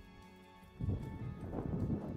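Horse's hooves beating in loose, dusty arena dirt at a lope, starting loud about a second in over a background music bed.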